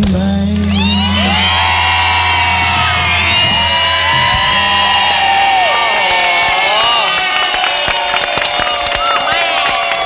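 Studio audience screaming and cheering in many high voices at the end of a live pop song. The band's last low chord rings under the first few seconds and fades away.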